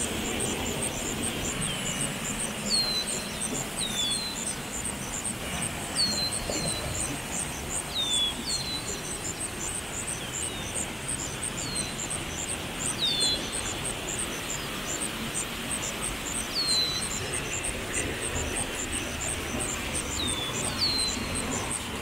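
Steady rush of a small waterfall tumbling through a rocky stream. Over it a bird gives short falling chirps about every two seconds, against a fast, steady series of high-pitched pips.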